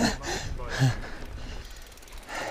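A man laughing briefly in the first second, over the rumble and rattle of a mountain bike rolling along a rocky dirt trail, picked up by a handlebar-mounted camera.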